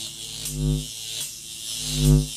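A low electronic buzzing tone that swells and fades about every second and a quarter, over a steady high hiss: a synthesized sound played under the closing logo.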